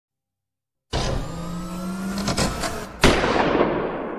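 Sound-effect intro. About a second in, a sustained droning sound with steady low tones starts, breaks up into a few clicks, and about three seconds in a single heavy boom hits. The boom is the loudest event and rings out in a long, heavily reverberated tail.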